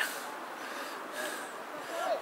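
A quiet pause in a man's spoken commentary: a soft breath-like hiss close to the microphone over low, even background noise.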